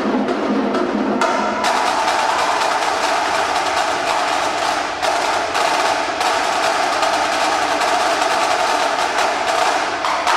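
Marching drumline of snare and tenor drums playing a fast, dense cadence of rapid strokes and rolls. About a second and a half in the deeper drum sound drops away, leaving the higher snare rolls.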